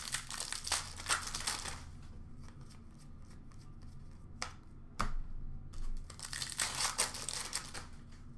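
Wrapper of an Upper Deck hockey card pack crinkling and tearing as it is opened, with the cards rustling as they are handled. The rustling comes in two spells, one at the start and one in the last few seconds, with two sharp clicks between them.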